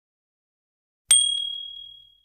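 A single bright bell-like ding sound effect about a second in, ringing out and fading over about a second: the notification-bell chime of a subscribe-button animation being clicked.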